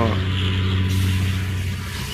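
Steady low hum of a running engine, holding one pitch and slowly fading.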